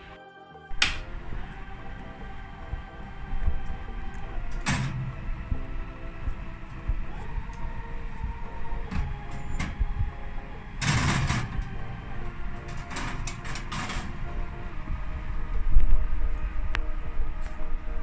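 Background music over the knocks and scrapes of an oven being opened and a metal muffin tin being slid out over the wire oven rack. The loudest scrape, lasting about a second, comes about eleven seconds in, with a few sharp clicks before and after it.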